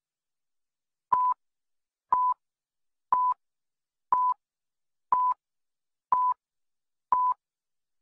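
Countdown leader beeps: seven short, identical electronic beeps at one steady pitch, one each second, starting about a second in.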